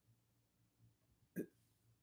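Near silence: room tone, broken once about one and a half seconds in by a single short, faint mouth sound from a person.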